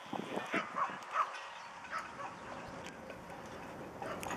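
A dog giving a few short barks in the first second or so, then quieter.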